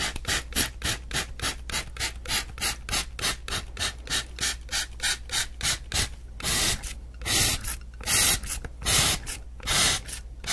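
A plastic spray bottle pumped close to the microphone, each squeeze of the trigger a short hiss of spray, about four a second. From about six and a half seconds in, the sprays come slower and each lasts longer.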